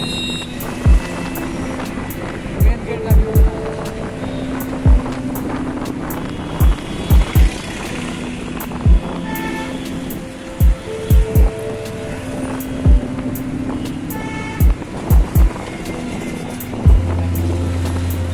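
Background music with a drum beat and held notes, over the steady noise of road traffic.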